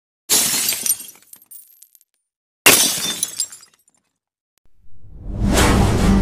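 Two glass-shattering crashes about two and a half seconds apart, each tinkling away over a second or so, then a rising swell that leads into music near the end.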